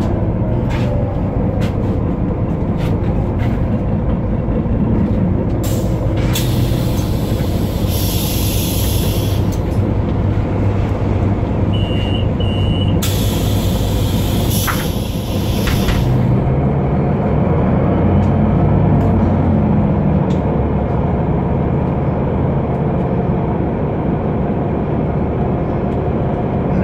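Inside a Solaris Urbino 12 city bus: its DAF PR183 diesel idles at a stop, loud hisses of compressed air come in the middle with two short beeps between them, and then the engine note rises as the bus pulls away through its ZF 6HP-504 six-speed automatic gearbox, which the uploader calls wrecked.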